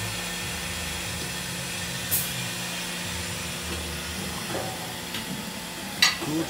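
Mazak VCN-530C-II vertical machining center running under power, a steady hum and hiss with low motor tones that shift a few times. A sharp click comes about two seconds in, and a louder sharp snap right at the end.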